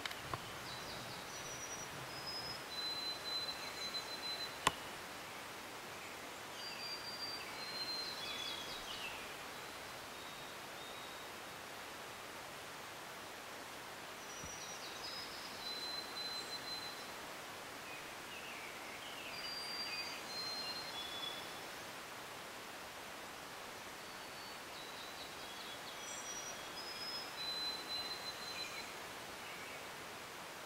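Quiet spring woodland with a steady faint hiss, in which a songbird sings a short song of high whistled notes and quick slurs about five times, every five or six seconds. A single sharp click comes about five seconds in.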